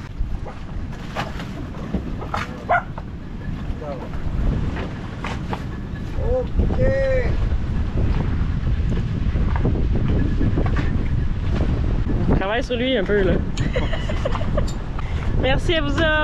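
Wind buffeting the microphone in a low, steady rumble that grows louder about six seconds in, with voices calling out briefly a few times over it.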